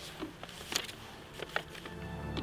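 Faint handling noises: a few short, scattered clicks and crackles.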